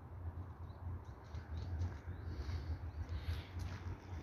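Outdoor ambience: a steady low rumble with faint, high bird chirps now and then and a few soft clicks.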